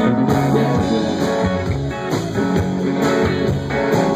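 Live rock band playing an instrumental passage, electric guitars to the fore over bass and drums, with no singing.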